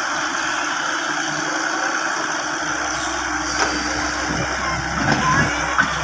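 Hitachi hydraulic excavator's diesel engine running under load as the boom raises and swings a bucket of soil, with one sharp knock about three and a half seconds in. The sound grows louder with uneven low thumps near the end.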